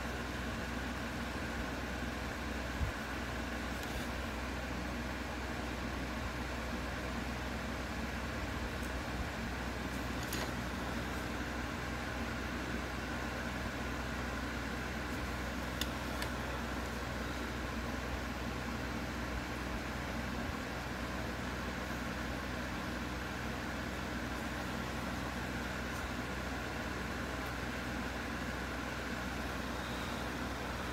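Steady mechanical hum of a room, even throughout, with a low drone and a fainter high tone, and a few faint ticks at about three, ten and sixteen seconds in.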